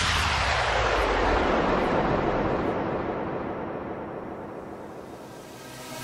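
An electronic noise sweep, a downlifter-style transition effect in a dance music mix: a hissing whoosh that falls in pitch and fades steadily over about five seconds, with no beat underneath.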